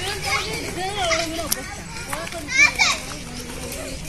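Children's voices chattering and calling over one another, with a louder, high-pitched call about two and a half seconds in.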